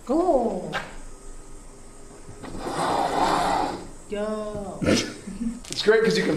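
Wordless vocal sounds from a man, his voice sliding down in pitch at the start and again about four seconds in, with a short rush of noise in between. Sharp clicks of a glass door's handle and latch come about a second in and again near the end as the door is opened.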